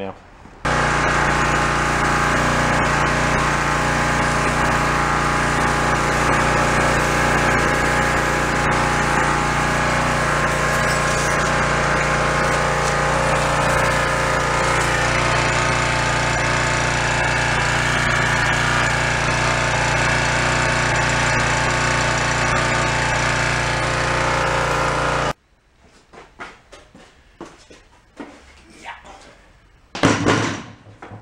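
Craftsman gas pressure washer's small engine running steadily, now that the automatic choke has been put right; it starts suddenly and cuts off abruptly a few seconds before the end. Water sprays from a freeze crack in the pump housing.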